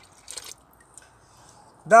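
A short splash as the last of a glass of rosé wine is tipped out into a plastic bucket, about half a second in, then quiet.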